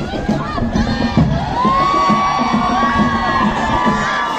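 Crowd of spectators cheering and shouting, many high voices overlapping, with one long high-pitched shout held for about two seconds midway through.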